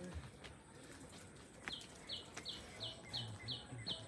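A bird calling faintly: a run of about eight short, high notes, roughly three a second, each dropping slightly in pitch, starting a little under two seconds in.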